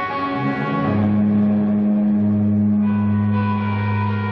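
Live grunge band playing a slow, sustained passage: held electric guitar chords and a bass note ringing out, with a new low note entering about a second in and no drum hits.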